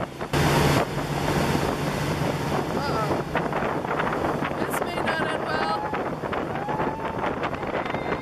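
A towing motorboat's engine runs with a steady hum under wind buffeting the microphone and the rush of wake water. About half a second in there is a brief, loud gust of wind and spray noise, the loudest moment.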